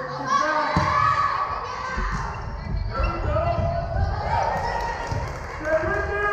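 Volleyball being hit in a rally in a gymnasium: a serve struck a little under a second in, then several more hits over the next few seconds, each thud echoing in the hall, with girls' voices calling over them.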